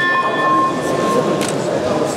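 Sports-hall crowd voices with a sustained whistle tone, held steady and stopping about a second in. A sharp knock follows about one and a half seconds in.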